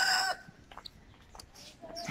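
Domestic rooster crowing, the crow ending about a third of a second in. After it the yard goes quiet, with a few faint ticks.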